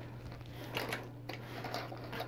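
Small plastic toy parts being handled and set down on a wooden surface: light scattered clicks and rustles, a little busier about a second in.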